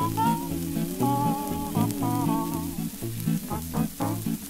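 Old 78 rpm shellac record of a vocal quartet with guitar in swing rhythm: a wordless, horn-like lead line with wavering pitch over a pulsing bass line and strummed guitar chords. Crackle and hiss of the disc's surface noise runs under the music.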